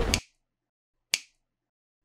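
A loud logo sound effect cuts off just after the start. About a second later comes a single short, sharp snap-like click from the end-screen animation's sound design.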